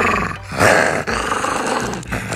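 Small dog (Shih Tzu) growling playfully in two long rough growls with a short break a little before half a second in.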